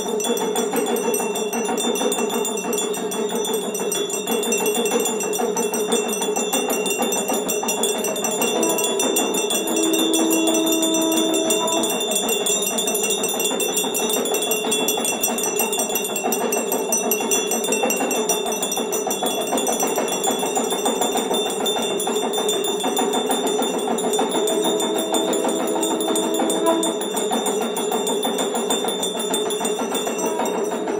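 Temple bells and hand bells of a Hindu aarati ringing nonstop in a dense, rapid clangour, their high tones ringing on without a break. A long held lower note sounds twice, about nine seconds in and again near the end.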